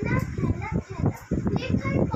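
Only speech: a child's voice talking, with other children's voices in the room.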